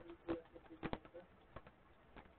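Sharp clicks of computer keys being pressed, a few in quick succession, as a text editor's search steps from one match to the next. Faint short low tones sound in the background.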